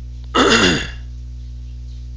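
A person clearing their throat once, a short harsh sound of about half a second, over a steady low electrical hum.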